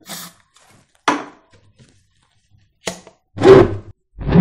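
A butane deodorant aerosol sprayed in two short hissing bursts into an empty plastic bottle, charging it with a butane-air mix. Near the end come a sharp click and then a louder, deeper burst.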